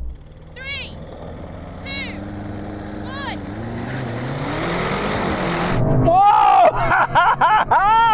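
Three short countdown sounds about a second apart, then twin-turbo V8 cars launching off the line with full-throttle acceleration, the engine note rising. Near the end a man yells loudly.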